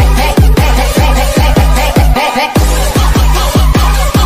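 Jungle Dutch electronic dance music: rapid, pounding bass kicks that drop in pitch, with a brief break in the bass a little past halfway.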